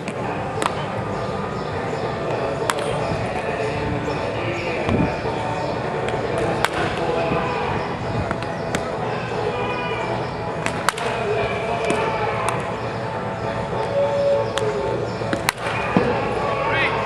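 Sharp cracks of a wooden bat hitting baseballs in batting practice, about one every two seconds, over background voices and music.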